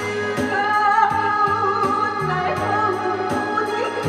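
A woman sings a Korean pop song into a handheld microphone over instrumental accompaniment with a steady beat. She holds notes with vibrato.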